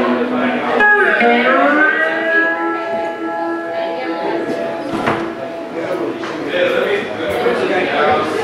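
A live song performed by a singer with guitar accompaniment, the voice drawing out long held notes.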